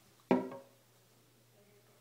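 A single sharp knock on a porcelain toilet, about a third of a second in, with a short ringing tail that dies away within a few tenths of a second.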